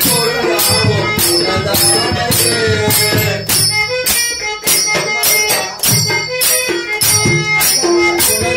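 Devotional bhajan music: a man's voice singing through a microphone over bright metal hand percussion keeping a steady beat of about three strokes a second.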